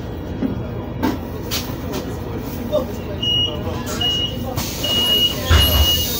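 City bus interior: the engine's steady low rumble, and from about three seconds in a high electronic beep repeating in short and longer pulses, plausibly the door warning signal as the doors work. A hiss of air rises about a second later, and there is a heavy thump near the end.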